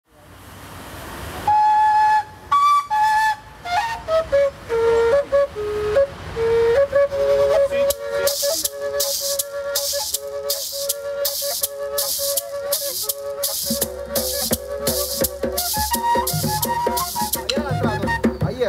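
Gaita, the Colombian cactus-and-beeswax duct flute, playing a slow melody of held and stepping notes, joined from about eight seconds in by a maraca shaken about twice a second and, near the end, by low hand-drum strokes.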